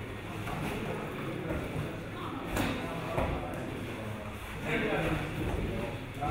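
Indistinct chatter of many people in a large hall, with two short knocks about two and a half and three seconds in.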